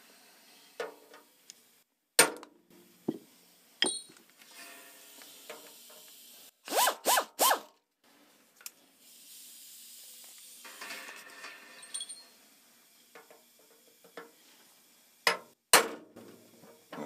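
A small air drill run in three short bursts, drilling the head off an aluminium Avex pop rivet, with light clicks of tool handling around it. Near the end, a couple of sharp taps of a hammer on a pin punch knock at the rivet stem.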